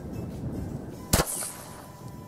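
A single shot from a Benelli Nova pump-action shotgun firing a slug, a sharp report about a second in with a brief ring after it.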